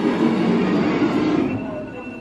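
Whirring rumble of a coin-op fortune-teller machine's bill acceptor drawing in a dollar bill, fading out about one and a half seconds in.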